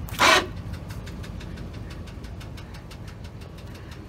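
A brief, loud rushing burst just after the start. Then a vehicle engine idling steadily, a low rumble with faint even ticking.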